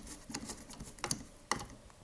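Hand screwdriver turning a steel barrel band screw tight on a Marlin 336W lever-action rifle: a few small, irregular metallic clicks and ticks from the bit and screw, one of the clearest about one and a half seconds in.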